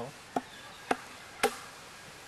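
Three sharp chops of a hand carving tool into wood, evenly spaced about half a second apart.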